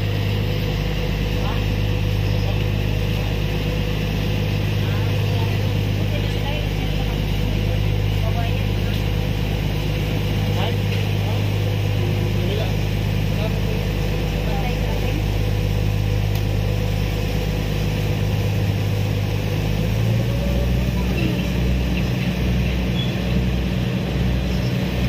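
Ferry engines running with a steady low drone under a wash of broad noise. About twenty seconds in, the drone changes and starts to pulse.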